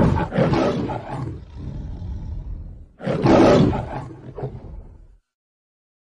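Lion roar sound effect, twice: a roar already under way that dies away over the first two and a half seconds, then a second roar starting about three seconds in and ending about two seconds later.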